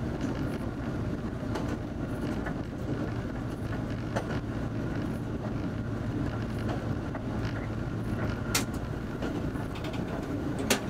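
Diesel railcar running steadily along the track, heard from the driver's cab: a constant low rumble of engine and wheels on rail, with a few sharp clicks, one about four seconds in and another near the end.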